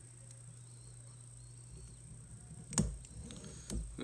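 Quiet room tone with a steady low hum, broken near the end by two light knocks less than a second apart.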